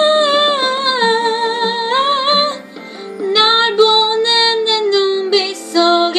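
A young woman's voice singing a Korean pop ballad over an instrumental backing track. She holds two long, wavering notes with a short break between them about halfway through.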